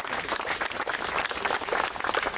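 A small crowd applauding: many hands clapping in a dense, irregular patter.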